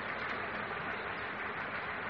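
Steady faint hiss of background noise with no other sound, in a pause between stretches of speech.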